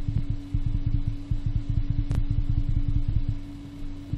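Low rumble of rapid, soft thumps over a steady electrical hum, with a single sharp click about two seconds in; the rumble fades shortly before the end.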